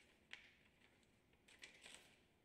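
Paper being handled and folded by hand, heard faintly: one crisp crackle about a third of a second in and a short cluster of crackles near the end, against near silence.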